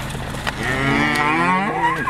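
A cow mooing: one long moo that begins about half a second in and bends down in pitch as it ends.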